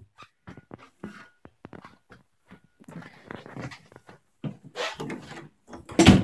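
Faint, scattered clicks and knocks from a wooden closet door being handled.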